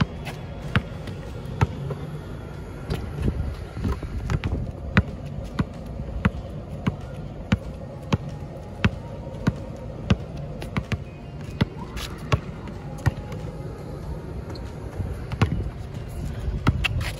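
A basketball dribbled on an asphalt court, bouncing at a steady beat of about three bounces every two seconds.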